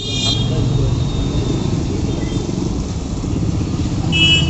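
Street traffic: a steady rumble of motor vehicle engines, cars and motorcycles, running close by.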